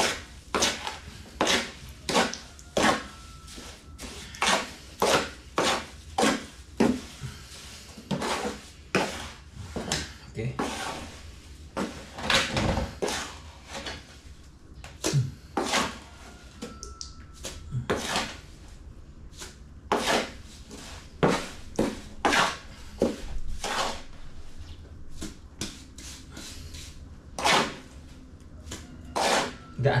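Irregular scraping and knocking of wet cement mix being scooped by hand out of a large plastic basin, about one or two strokes a second, thinning toward the end.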